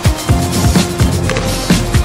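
Background electronic music with a fast, driving drum beat.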